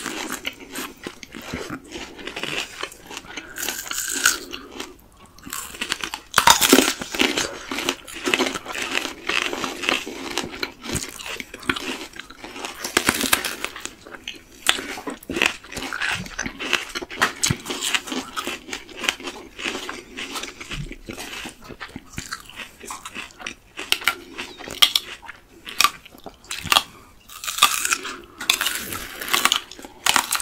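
Two people biting into and chewing crisp unripe green plums close to the microphone: irregular sharp crunches of the firm fruit being bitten, with chewing between them.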